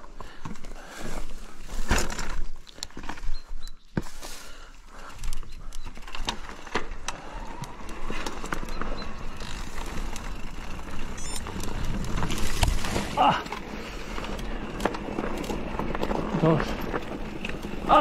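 Mountain bike ridden over a rocky trail: a steady rumble of tyres rolling on stones and gravel, with frequent clicks and knocks as the bike rattles over rocks.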